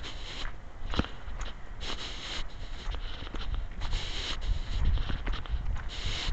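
Footsteps crunching in snow at a steady walking pace, over a low rumble of wind on the microphone.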